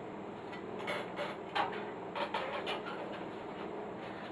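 A few light knocks and clicks of handling as the Unitra T7010 tuner's detached front panel is moved and set down on a wooden workbench, bunched about one to three seconds in.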